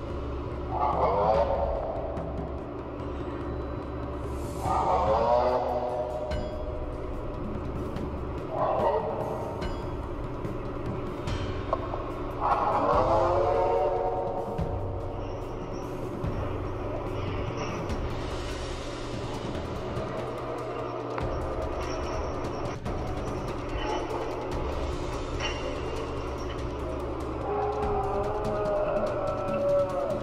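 Long, eerie wailing cries, each sliding down in pitch: four loud ones in the first half, then fainter wavering ones near the end, over a steady low hum. They come out of a hole dug in the ground and are claimed to be the voices of fallen angels imprisoned under the Euphrates.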